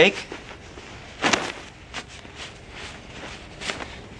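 A down-filled hammock underquilt being shaken, its fabric shell flapping and rustling in a few short swishes. The strongest comes about a second in. The shaking moves the down fill along the baffles.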